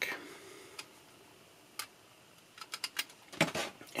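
Small plastic and metal clicks as an Apple MF355F floppy drive is handled and its eject button fitted back onto the sheet-metal chassis. There is a single click about a second in, another near two seconds, then a quick run of clicks in the last second and a half.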